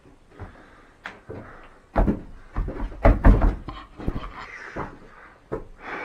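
Heavy footsteps on old wooden floorboards, thudding and creaking underfoot, with a cluster of the loudest thumps about two to three and a half seconds in.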